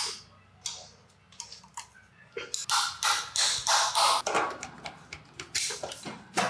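Metal hand tools working on an old motorcycle engine: a sharp clank right at the start, then a run of metallic clicks and clinks, sparse at first and busy from about two and a half seconds in.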